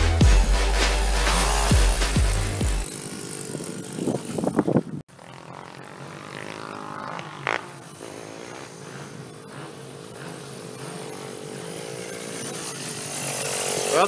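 Hip-hop music with heavy bass for the first few seconds, fading down to an abrupt cut about five seconds in. After the cut, a small dirt bike's engine runs steadily, heard from far off.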